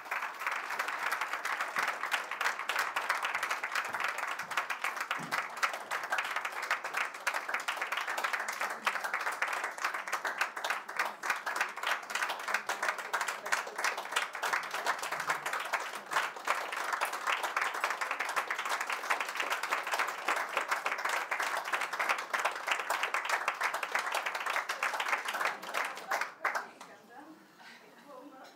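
Steady applause from a roomful of people giving a standing ovation, many hands clapping at once.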